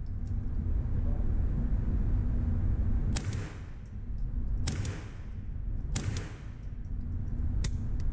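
Three shots from an ArmaLite AR-7 semi-automatic .22 Long Rifle survival rifle, about a second and a half apart. Each is a sharp crack with a short echo off the concrete walls of an indoor range, over a steady low rumble, with a fainter tick near the end.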